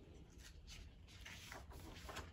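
Faint rustle of a picture book's paper pages being handled and turned by hand, a few soft scrapes over otherwise near silence.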